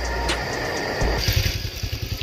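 Motorcycle engine: a low rumble for the first half second, then, from just after a second in, the engine idling with an even putter as the bike stands.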